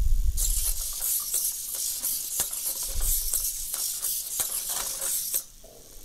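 The servo motors of a 3D-printed quadruped robot whirring in a high, hissy buzz as it walks backwards, with sharp clicks as its plastic feet tap the tile floor. The whirring stops suddenly about five and a half seconds in.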